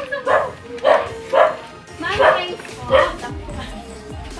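A dog barking, about five sharp barks spread over three seconds, over background music.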